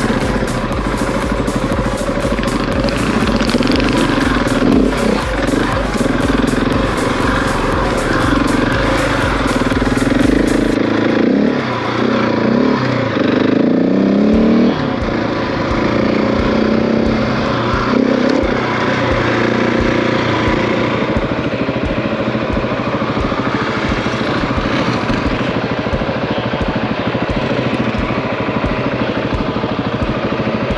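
Husqvarna 701's single-cylinder engine accelerating away and riding on, its pitch rising and falling repeatedly as the throttle opens and the gears change.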